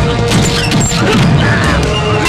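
Film fight sound effects: several punch and crash hits over loud background music.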